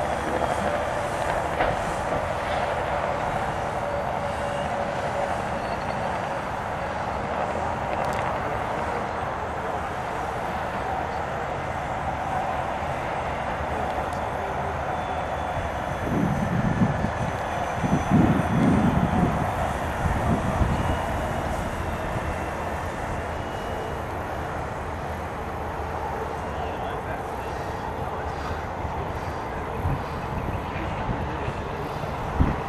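Radio-controlled scale autogyro flying overhead, its small engine and propeller running with a steady drone under power. A few low rumbles come through in the middle.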